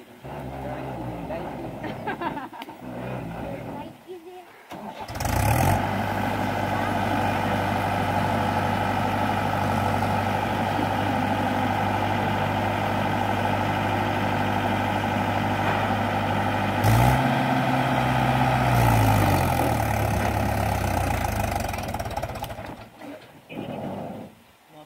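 Mahindra 575 tractor's diesel engine, quiet and uneven at first, is opened up about five seconds in and then runs hard and steadily under heavy load. A brief rise in revs comes about two-thirds of the way through before the engine falls back and drops away near the end.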